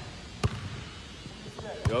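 A basketball bouncing twice on a gym floor, a sharp knock about half a second in and another about a second and a half later.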